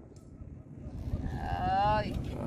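A long, drawn-out vocal groan that starts about a second in and rises slightly in pitch. It is an exclamation of exasperation at a gill net that keeps coming up full of snails instead of fish. It sounds over a faint low rumble.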